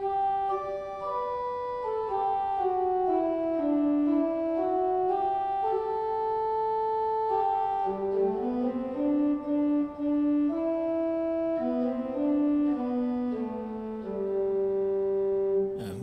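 Pipe organ's 4-foot Choralbass pedal stop playing a slow line of held notes that steps downward and then climbs back up.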